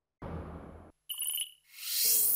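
Sound effects of a TV sports channel's logo sting: a short dull burst, then a brief bright bell-like chime, then a rising whoosh leading into the next graphic.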